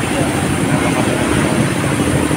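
Steady noise of busy city road traffic, with indistinct voices mixed in.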